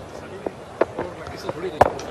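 Low ground ambience with faint distant voices, then, near the end, a single sharp crack of a cricket bat hitting the ball.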